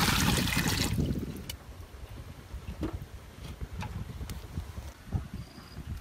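Water pouring in a thick stream into a large aluminium pot, splashing loudly and stopping about a second in. A few faint taps follow.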